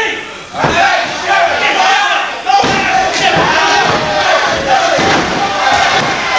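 Crowd of wrestling spectators shouting and yelling, many voices overlapping, with a few heavy thuds of bodies hitting the ring about half a second, two and a half seconds and five seconds in.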